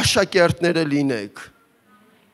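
A man speaking into a microphone, breaking off about a second and a half in into a short pause.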